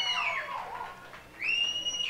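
Live concert audience screaming in high, drawn-out cries. One held scream falls away in the first half second, and after a lull a new one rises about 1.4 seconds in and holds.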